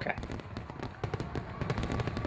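Fireworks sound effect: a dense crackle of many small pops and bursts.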